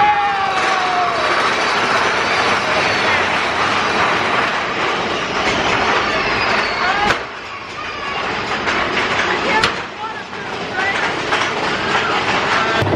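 Mine-train roller coaster cars running along their track through a dark section of the ride, a steady rattle and rumble with short squeals. The noise dips briefly about seven and ten seconds in.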